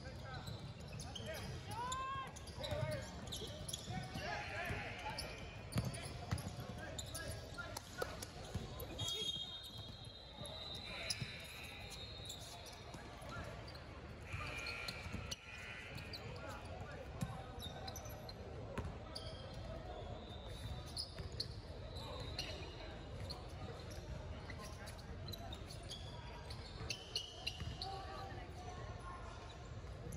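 Basketball bouncing on a hardwood court with repeated knocks, over voices of players and spectators echoing in a large gym. A few short squeaks come about two seconds in.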